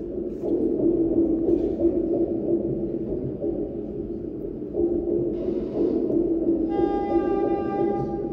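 Slow live music: a wind instrument, likely a saxophone, plays long held notes in the middle register in two phrases. From about seven seconds in, a single high note with many overtones is held.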